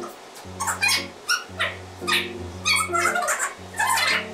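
Background music: a bass line of short held notes changing about every half second, with high, squeaky, bending melody tones above it.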